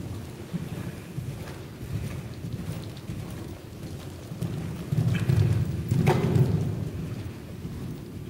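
Horse cantering on the sand footing of an indoor riding arena: dull, irregular hoof thuds, loudest a little after halfway, with one sharp knock about six seconds in.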